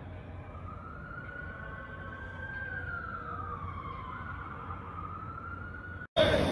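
Emergency-vehicle siren wailing, one slow rise and fall and then rising again, over a steady low background rumble.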